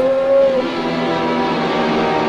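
Horror film score music: held low tones under a higher line that slides up in pitch, holds briefly and fades out about half a second in.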